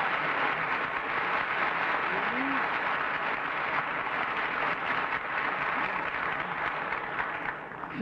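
Studio audience applauding steadily, easing off near the end, with a voice faintly heard through it.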